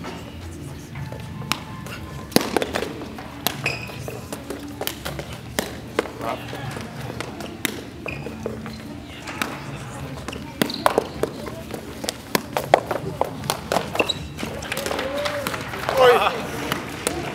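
Sharp, irregular taps of a footbag being kicked back and forth across the net during a rally, mixed with footsteps on the sport court, over a low background of voices.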